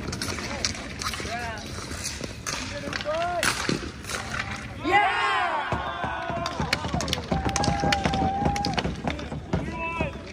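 Players shouting and calling out during an outdoor ball hockey game, with sharp clacks of sticks and ball on asphalt and concrete boards. There is a loud yell about five seconds in and a long held call shortly after.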